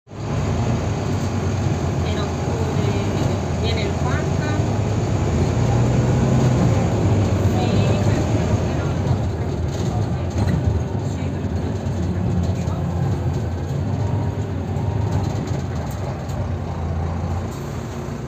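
Volvo B9TL double-decker bus under way, heard from inside the passenger cabin: the diesel engine and running gear make a steady low drone that grows a little louder in the middle and eases slightly near the end.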